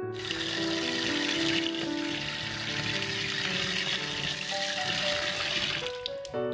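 Water pouring and splashing into a plastic bucket in a steady rush that starts suddenly and stops near the end, over background piano music.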